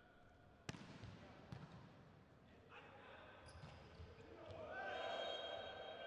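A volleyball smacks the court floor under a second in and bounces again, in a large hall. Voices in the hall swell near the end.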